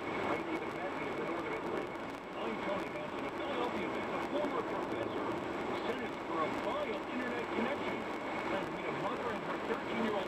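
Indistinct talk from a car radio news broadcast over steady tyre and road noise inside a car's cabin at highway speed.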